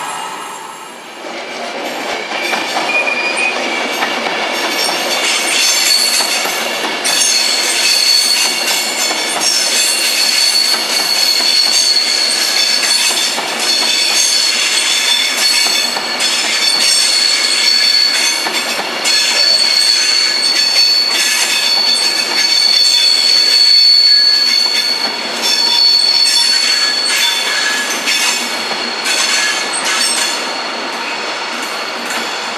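A Class 390 Pendolino electric train runs past with its wheels squealing. From about seven seconds in, several high steady tones sit over the rumble of the bogies, with occasional clacks over the rail joints.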